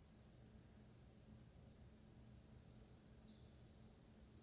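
Near silence: room tone with a low hum and a few faint, short high-pitched chirps.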